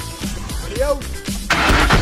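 Ford F-150 pickup engine starting, coming in suddenly and loud about one and a half seconds in, over background music.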